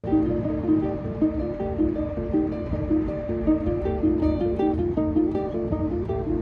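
Acoustic guitars played together, a short picked figure repeating in a steady rhythm over sustained notes, with a low background rumble underneath.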